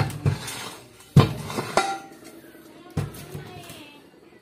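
Metal car wheel rims knocking and clanking as they are handled, about five sharp knocks, several followed by a short metallic ring.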